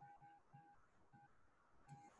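Near silence, with a few faint short electronic beeps on one pitch.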